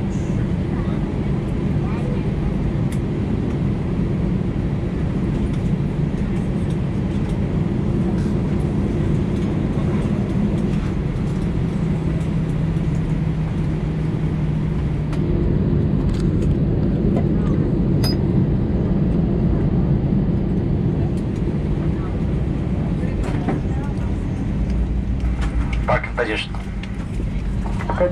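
Steady low drone inside the cabin of an Airbus A320 parked at the gate, from the engines or APU and cabin air, with faint passenger voices over it.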